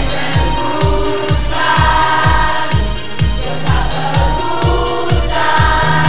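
Upbeat pop song with a steady kick drum about two beats a second and singing voices over it.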